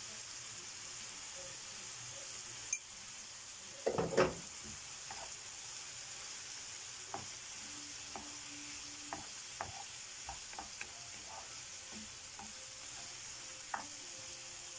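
Shrimp and diced vegetables sizzling in a frying pan while a wooden spoon stirs them, with one louder clatter about four seconds in and scattered light taps of the spoon against the pan after that.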